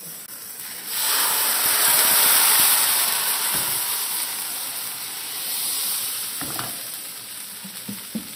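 Thin pancake batter sizzling in a hot oiled frying pan. The sizzle jumps up about a second in as the batter hits the pan, then slowly dies down as the first pancake sets.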